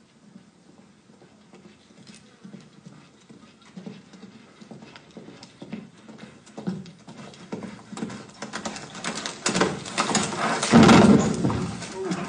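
Recorded hoofbeats of a horse played back over a theatre sound system, a regular clip-clop that grows steadily louder as the horse approaches, loudest near the end.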